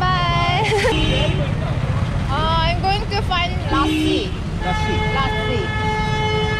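A vehicle horn on a busy street: a brief toot about four seconds in, then one long steady blast of about two seconds near the end, over a constant low traffic rumble.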